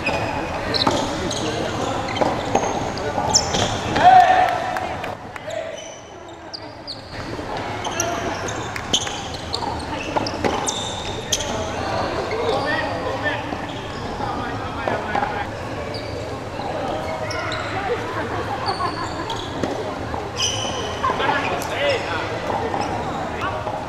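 A doubles rally in a racket-and-ball game: short, sharp knocks of a ball being struck by rackets and bouncing on the court, again and again, over voices in a large indoor sports hall.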